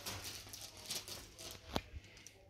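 Faint rustling handling sounds, with one short, sharp click near the end.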